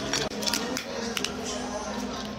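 Cooked crab leg shells cracking and snapping as they are broken apart by hand: several short, sharp cracks.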